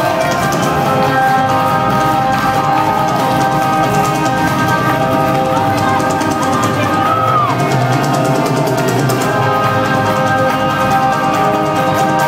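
Metalcore band playing live: electric guitars and a drum kit at a loud, steady level, with sustained guitar notes.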